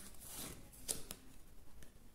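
Faint rustling of stiff card stock as a card is slid out of a fanned deck of large oracle cards, with a few light clicks about a second in.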